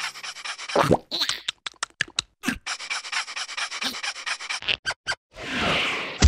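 Cartoon larva characters panting and huffing in quick, irregular breaths, then a rising hiss near the end.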